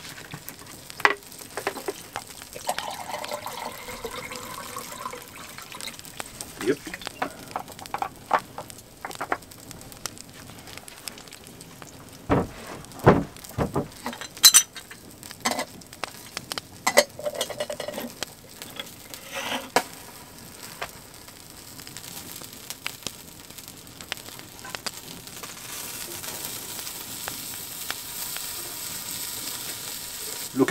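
Wood fire crackling and popping in an open hearth under a steady sizzle of chicken grilling above the flames, the hiss growing louder near the end. About halfway through, a few heavy knocks come from the lid of a cast-iron pot being handled.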